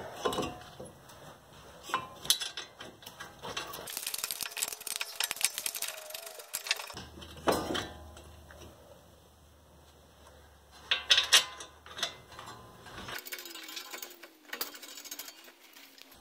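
Intermittent metallic clicks and clinks as a brake caliper is fitted back over new pads and rotor and its bolts are started, with a denser run of rapid clicking in the middle and a few sharper knocks later.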